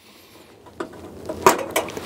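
The latch of a Coleman two-burner propane stove's steel case being released and the lid being swung open, making a few sharp metal clicks and knocks. The loudest knock comes about halfway through.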